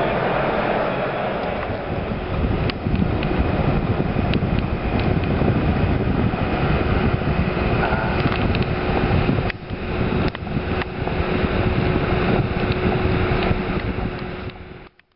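Road and wind noise of a moving car, with wind buffeting the microphone, briefly dipping about nine and a half seconds in.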